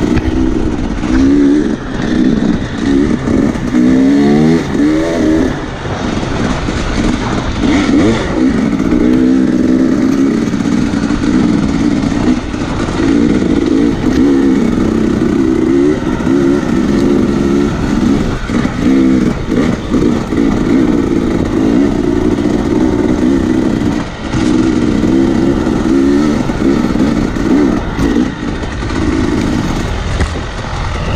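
Dirt bike engine, heard close from onboard, revving up and down with the throttle as it is ridden over uneven trail. The pitch rises and falls constantly, with a sharp climb about four to five seconds in.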